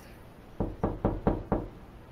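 Knocking on a door: a quick run of about five knocks, roughly four a second.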